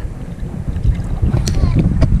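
Wind buffeting an action camera's microphone, a steady low rumble, over shallow saltwater lapping around the wader. A few short clicks and a faint voice come in just after the middle.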